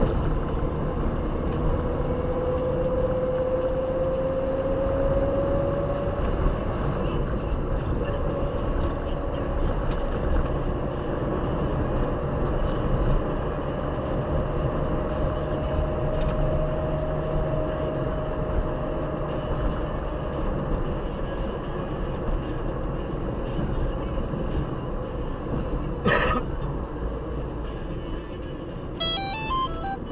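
Car driving, heard inside the cabin: steady engine and road noise, with a whine that rises in pitch over the first few seconds as the car speeds up. A single sharp click comes about 26 seconds in, and a short run of quick high tones comes near the end.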